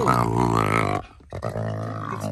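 Black jaguar cub giving a low, drawn-out growling moan. It calls twice, with a short break about a second in, complaining as it is lifted out of the car.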